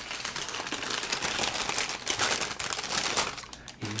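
Close-up crinkling and crackling, a dense run of tiny clicks, as a piece of crumbly baked food is picked up and handled.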